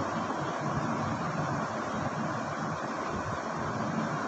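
Steady rushing background noise, an even hiss and rumble with no distinct events.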